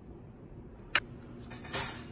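Kitchen handling sounds at the counter: one sharp click about a second in, then a short scraping rustle near the end as utensils and containers are picked up and moved.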